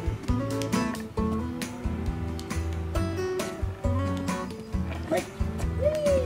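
Background music with a steady beat and held melodic notes; near the end a wavering, sliding tone comes in over it.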